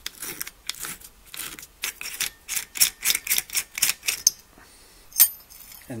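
Top cap of a motorcycle coil-over shock absorber being worked loose against its spring: a run of light metallic clicks, about four or five a second, that stops about four seconds in, then one sharp click a second later.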